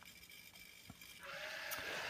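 Near silence, then about a second in a small electric motor starts a faint steady whir.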